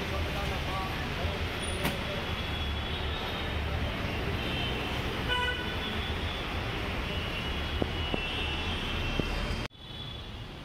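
Busy road traffic: a steady rumble of passing engines, with a vehicle horn tooting briefly about five seconds in. The sound cuts off abruptly just before the end.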